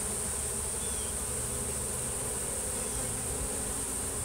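Steady buzzing of a honeybee swarm moving into a hive.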